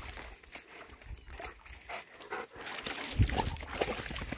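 A dog wading through shallow water, splashing and nosing at the surface, with a louder splash about three seconds in.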